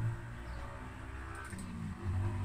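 A few faint quick mouse clicks about one and a half seconds in, opening a directory on an Acorn Risc PC, over a low steady background hum.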